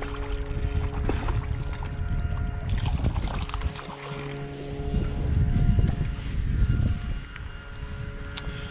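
Wind rumbling in gusts on the microphone over background music with steady held notes. About three seconds in, a hooked crappie splashes at the surface as it is reeled to the boat.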